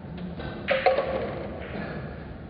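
Two sharp clacks of pool balls striking, about a fifth of a second apart and a second in, with a brief ringing after them.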